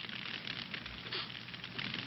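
Steady crackling of a forest fire, heard faintly through the film's soundtrack hiss.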